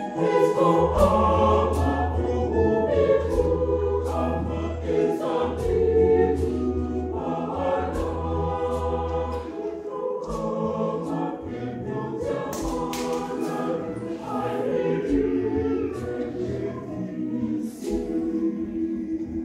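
A mixed choir singing in parts, with sharp percussive strokes from traditional drums and a gourd shaker cutting through the voices. A deep low tone sits under the singing for the first nine seconds or so.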